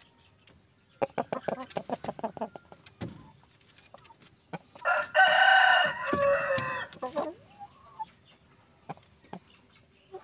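A rooster clucking in a quick series of short notes, then crowing once, loudly, for about two seconds about halfway through.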